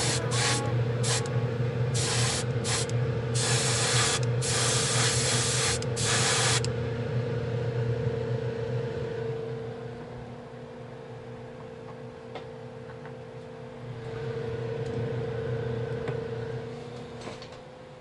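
Gravity-feed airbrush spraying a gloss black base coat onto a plastic model part, in a series of short hissing bursts over the first six or so seconds, then stopping. A steady low hum runs beneath throughout.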